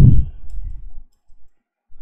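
A few faint computer keyboard clicks as text is deleted and retyped in a code editor.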